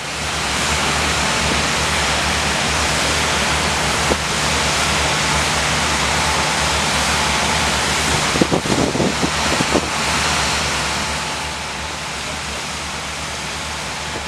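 High-volume water streams from large fire monitors: a loud, steady rush of spray and falling water over a low, even drone of pump engines. The rush eases somewhat about eleven seconds in.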